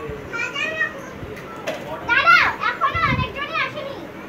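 Children's high-pitched voices calling out excitedly during play, in two spells, the loudest a little after two seconds in, with a low thud near three seconds.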